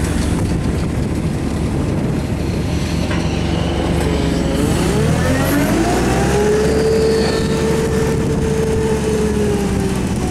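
Komatsu forklift's engine running steadily, then revving up about halfway through with a rising whine that levels off into a steady tone as the hydraulic lift raises the telescoping mast.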